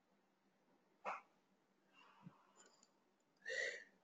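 Near silence, with a faint click about a second in and a short soft breath near the end.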